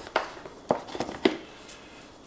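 Packaging handling: a few short, sharp taps and clicks as an Apple 140 W USB-C power adapter is lifted out of its molded paper tray, the coiled charging cable in the other hand.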